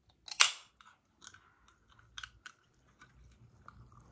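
A Coca-Cola aluminium can cracked open: one sharp pop and hiss about half a second in, then a few light clicks.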